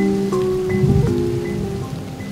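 A short musical interlude of sustained notes played over the sound of steady rain.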